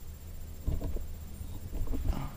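Footsteps and jostling of a body-worn camera, a run of irregular low thumps starting just under a second in, over a steady low rumble.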